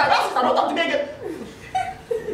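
Chuckling laughter in the middle of speech, loudest for about the first second and then trailing off, with a brief voiced sound near the end.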